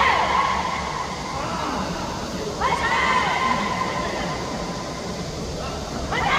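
A person's voice calling out in long, held tones, twice, over a steady background noise.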